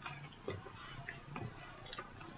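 Quiet room with a few faint, short clicks spaced about a second apart.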